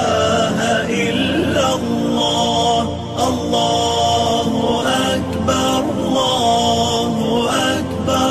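A solo voice chanting Islamic devotional lines in long, held, wavering melodic phrases, with short breaths between them.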